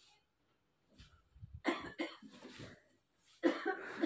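A few short coughs in quick succession, starting about a second and a half in.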